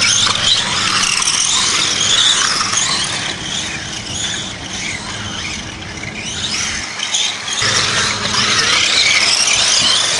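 Several radio-controlled cars' small motors whining at high revs, the pitch rising and falling as they speed up and slow down around the dirt track. The sound fades somewhat in the middle and grows louder again near the end as the cars come closer.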